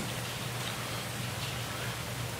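Courtroom room tone picked up by the witness-stand microphone: a steady low hum under a faint even hiss, with no speech.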